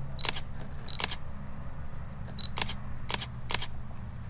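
Fujifilm X-S10 mirrorless camera's mechanical shutter firing about five times, single releases spaced irregularly across the four seconds, the first three each just after a short high beep. A crisp shutter sound, said to have depth and richness.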